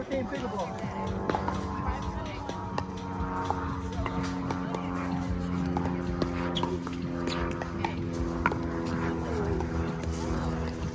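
Pickleball paddles hitting the hard plastic ball in a rally: short sharp pops a second or so apart, the loudest near the start and about eight seconds in. They sound over background music with held notes and faint voices from nearby courts.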